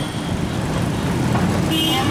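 Street traffic running steadily with a low rumble, and a short high-pitched horn toot near the end.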